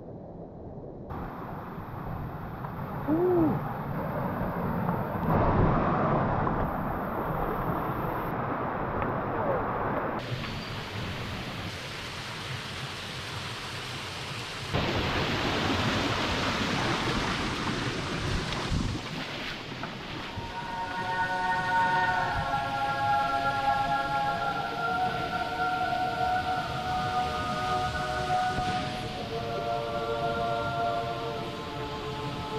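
Rushing water of a rocky mountain stream and small waterfall, a steady hiss whose level and tone change abruptly several times. Soft background music with held notes comes in about two-thirds of the way through.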